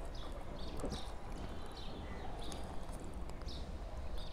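Close-miked chewing and lip-smacking on a mouthful of rice and chicken curry eaten by hand, a quick run of short wet clicks.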